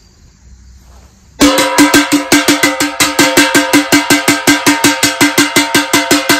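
A ladle beating rapidly on a stainless steel stockpot, starting about a second and a half in: fast, even strikes, about seven a second, each leaving the pot ringing.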